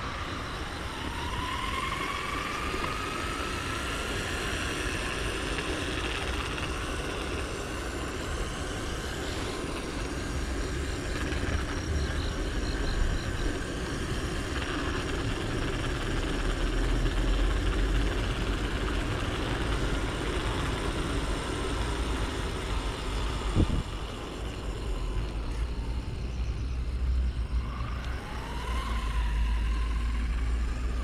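Wind rushing over the microphone with steady rolling noise during an electric unicycle ride behind an RC car. An electric motor whine rises in pitch near the start, a single sharp click comes a little after the middle, and a brief whine returns near the end.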